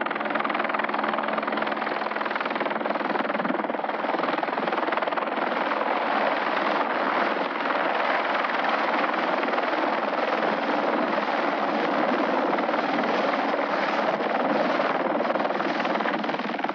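Helicopter flying low and hovering, its rotor and engine giving a steady, even noise throughout.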